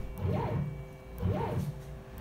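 CNC router stepper motors whining, the pitch rising then falling about once a second as an axis speeds up and slows down through short moves. A faint steady hum runs underneath.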